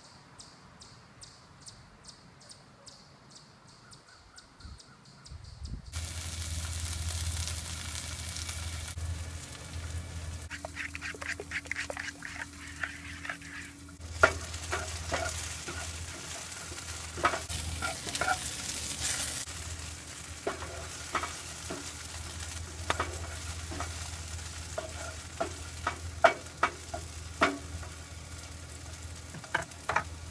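Faint, evenly spaced ticking at first; then, about six seconds in, a steady low hum starts, with plates and utensils clinking and knocking on a counter.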